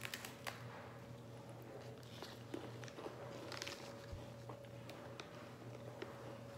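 People biting into and chewing crisp lemon-cream sandwich biscuits, with faint, scattered crunches every second or so.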